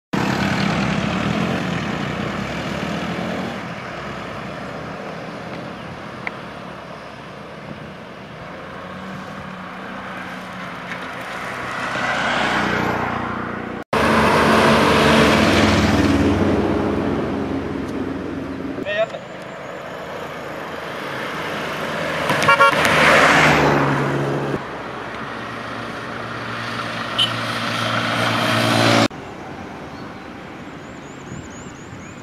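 Motor vehicles running and passing on a road, their engine noise swelling and fading several times, with voices in the mix. The sound changes abruptly twice, about halfway and near the end.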